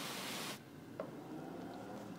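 Garden hose spray nozzle on its cone setting, the water spray hissing, then dropping off sharply about half a second in to a faint hiss, with a single small click about a second in.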